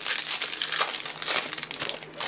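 Thin clear plastic crinkling steadily as a trading card is handled inside a plastic bag.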